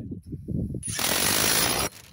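Cordless power driver driving a 30 mm tech screw into the timber, running loud for about a second, then cutting off sharply.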